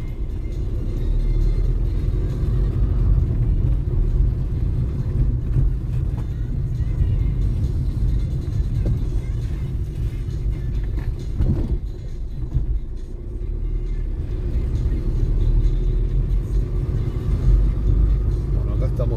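Steady low rumble of a car's engine and tyres, heard from inside the cabin while driving along at an even pace.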